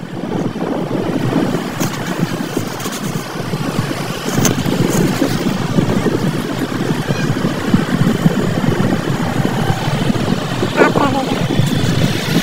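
Wind noise buffeting the microphone over a motorcycle engine running while riding along a road: a steady noise with no pauses.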